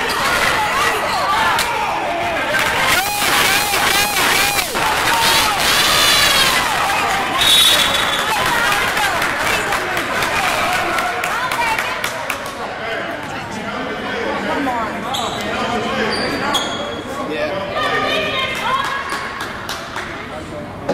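Indoor basketball game: a ball bouncing on a hardwood court, sneakers squeaking and players and spectators shouting, with a short whistle blast about seven and a half seconds in. It gets quieter in the second half.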